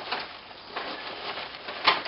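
Rustling and handling noises from an old handbag being opened and its paper-wrapped contents taken out, with a sharp click near the end.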